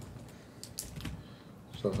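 A handful of soft, separate key clicks of typing on a laptop keyboard in a quiet pause, before a man starts speaking near the end.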